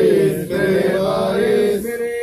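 Men's voices chanting a devotional Sufi zikr together, several voices overlapping in a sustained chant that pauses briefly about half a second in and again near the end.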